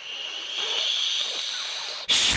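A steady hissing sound effect for the rocket ship blasting off. It comes up quickly at the start and holds level for about two seconds.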